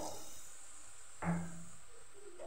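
Faint, steady sizzling of moong dal paste and milk cooking in hot ghee in a kadhai. A short, low hum comes about a second in.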